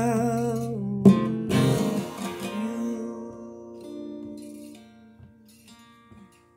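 Acoustic guitar strummed sharply about a second in and again just after, the chord ringing and fading away over the next few seconds, then a few faint plucked notes near the end.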